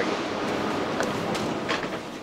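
Steady rushing noise of a railway station platform beside a standing Railjet train, with a few light clicks about a second in and near the end.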